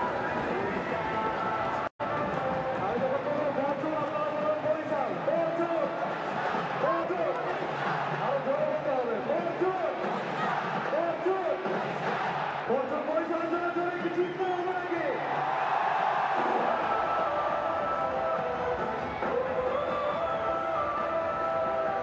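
Cricket stadium crowd noise: many voices shouting and calling at once over a steady roar, with a momentary cut to silence about two seconds in.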